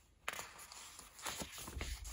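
Large paper cross-stitch chart rustling and flapping in a few short bursts as it is handled and its sheets are turned.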